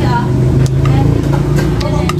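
Mouth sounds of chewing crisp green mango, with a few sharp crunchy clicks, over a steady low hum.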